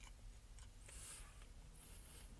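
A short rustle about a second in, followed by a fainter one near the end: handling noise while eating in a car.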